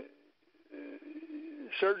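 A man's voice holding a drawn-out, steady hum-like "mmm" hesitation for about a second, before speech resumes near the end.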